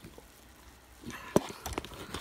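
Short metallic clicks and rattles from a steel crampon's length-adjustment bar being handled, with one sharp click about a second and a half in.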